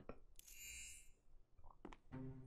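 Near silence, with a faint brief hiss in the first half and a couple of soft ticks near the end.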